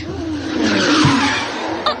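Sound effect of a car braking and skidding, a rushing hiss that swells to its loudest about a second in and then fades.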